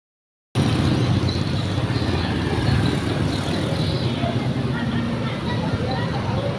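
Busy street traffic, mostly motor scooters with some cars, running and passing close by as a steady engine noise that starts about half a second in.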